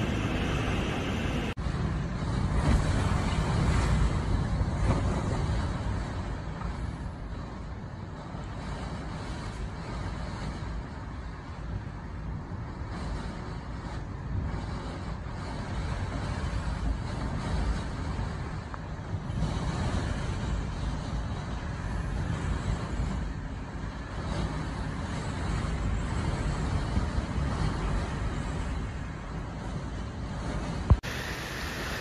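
Typhoon winds gusting hard, with heavy wind rumble buffeting the microphone, rising and falling in strength. Surf breaking against a seawall is heard for the first second or two.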